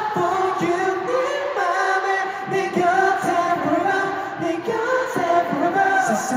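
Many voices singing a melody together, choir-like, in long held notes without a backing beat: an arena crowd singing along with the performers.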